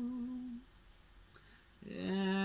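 A man's voice holds a low, wordless note that wavers slightly and stops about half a second in. After a short quiet pause, the next sung note starts just at the end.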